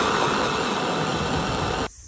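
Electric hand blender with a chopper attachment running, its blade whirring through fresh red chili peppers, then cutting off suddenly near the end.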